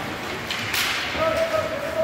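A single sharp crack of a hockey puck in play, a little before the middle, ringing briefly in the rink, followed by a long held shout.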